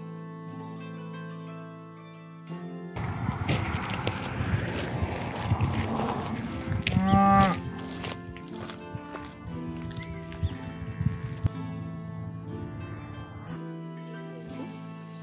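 A Highland cow mooing once, a short call about seven seconds in, under background music.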